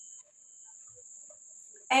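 Steady high-pitched insect trilling, typical of crickets, running through a pause; a woman starts speaking near the end.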